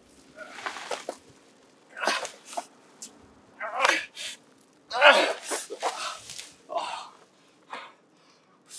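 A man grunting and gasping with effort in a series of short bursts as he heaves a heavy plastic-wrapped body.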